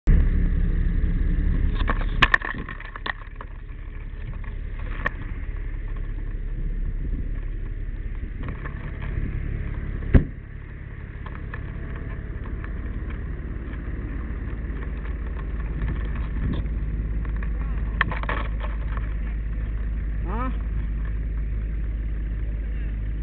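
Vehicle engine running steadily with a low rumble, heard from inside the vehicle, with a few sharp knocks and bumps, the loudest about ten seconds in.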